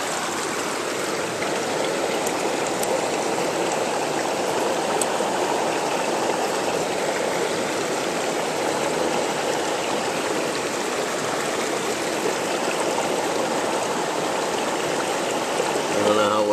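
Creek water running steadily over rocks close to the microphone.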